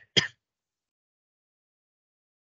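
A man clears his throat briefly right at the start, then silence.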